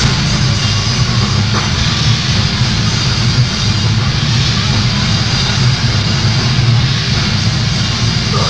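Grindcore band playing live: a dense, steady wall of distorted guitar, bass and drums.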